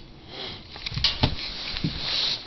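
A sniff close to the microphone, followed by a few soft knocks and clicks.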